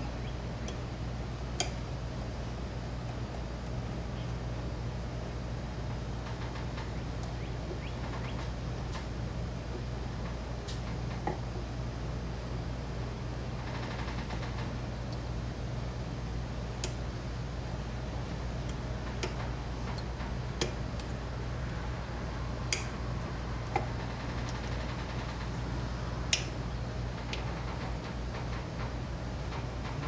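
Light metallic clicks and taps of a VW bus carburetor's small parts and linkage being handled and fitted by hand, about ten scattered through, over a steady low hum.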